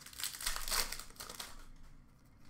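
Crinkling of a trading-card pack's wrapper as the hockey cards are handled. It is loudest for about the first second, with small crackles, then fades.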